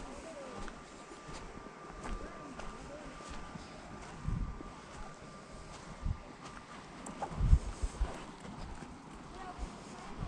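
Footsteps walking on dry grass, with irregular low thumps and a heavier cluster about seven to eight seconds in.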